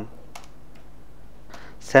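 Computer keyboard being typed on: a few faint key clicks. A man's voice begins a word right at the end.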